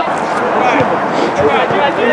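Several men's voices calling out across a football pitch during play, overlapping and indistinct, over a steady background hiss.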